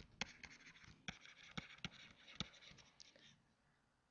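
A stylus writing on a tablet: faint scratching with a string of sharp taps as the strokes land, stopping about three and a half seconds in.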